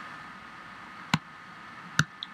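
Two short computer-mouse clicks, one about a second in and one at the end, over faint steady hiss.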